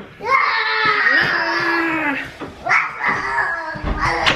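Baby fussing: one long, drawn-out whining cry of about two seconds, then a few shorter cries near the end.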